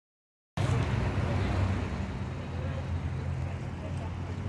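Steady low rumble of road traffic, cutting in suddenly about half a second in after silence.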